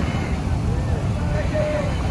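Busy street traffic, largely motorcycles, with a steady low rumble and people's voices talking nearby.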